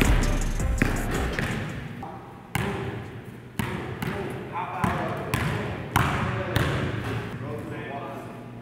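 A basketball bouncing on a gym floor: a handful of separate bounces, roughly a second apart, each echoing in the hall.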